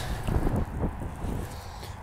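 Low wind rumble on the microphone, with the faint rustle of granular fertilizer scattered by hand onto loose garden soil.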